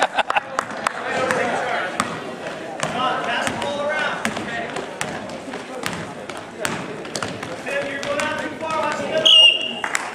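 Basketball bouncing on a gym floor in sharp, scattered thuds, over the voices of players and spectators. A short high squeal near the end.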